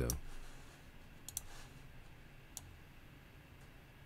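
Computer mouse clicking: a click at the start, a quick pair of clicks a little over a second in, and a single click about two and a half seconds in, over faint room tone.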